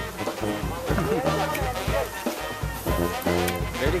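Background music with a steady beat. A man's voice says a word near the end.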